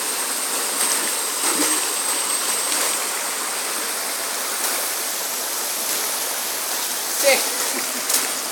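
Rushing river water, a steady, even hiss. A voice is heard briefly near the end.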